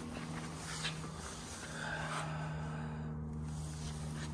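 A steady low hum of a few tones, with faint rustling and movement noise.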